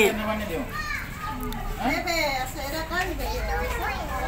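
Several voices, children's among them, chattering and talking over one another.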